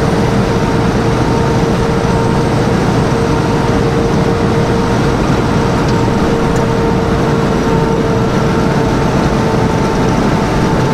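Semi truck cruising at highway speed, heard from inside the cab: steady engine and road noise with a constant hum that holds one pitch throughout.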